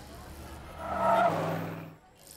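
Cartoon sound effect of a car driving past, its engine running with a tyre screech; it is loudest about a second in and fades out near the end.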